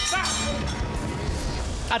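Broadcast transition effect: a low, steady rumbling whoosh with a faint held tone over it.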